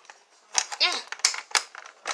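A few sharp clicks and taps of small plastic toy parts as a toy vanity's drawer and tiny makeup pieces are handled, with a brief wordless vocal sound from a child partway through.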